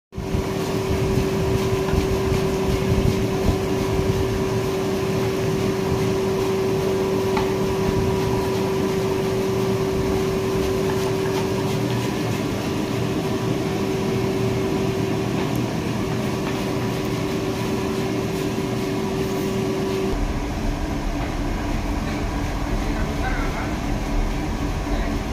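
A large pan of hot oil deep-frying banana chips, with a steady sizzle under a constant machine hum. About twenty seconds in, the hum's tone stops and a deeper rumble takes over.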